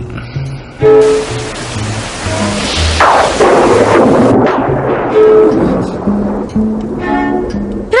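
A thunderclap with a rush of rain that starts suddenly about a second in, is loudest around three seconds and dies away by the middle, over soft instrumental background music.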